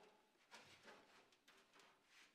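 Near silence, with a few faint clicks and rustles.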